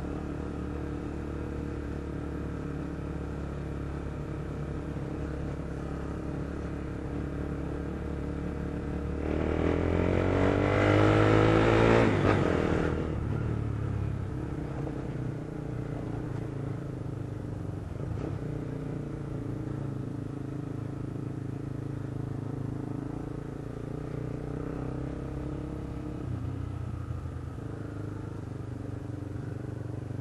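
Motorcycle engine running steadily while riding in traffic. About nine seconds in, a louder engine surge climbs in pitch for three or four seconds, then falls back to the steady running note.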